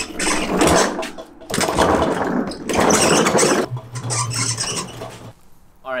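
An old refrigerator being pushed and walked across concrete, its metal cabinet and loose parts rattling and scraping in two long stretches. A short low hum follows near the end.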